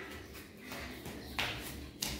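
Bare feet slapping and scuffing on a tiled floor while running, two soft footfalls heard, the second a little louder, over a quiet room background.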